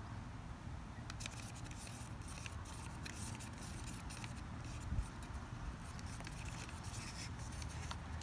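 Wooden craft stick stirring thick acrylic paint and pouring medium in a thin plastic cup: faint, irregular scraping and clicking against the cup's sides over a steady low background hum, with one soft knock about five seconds in.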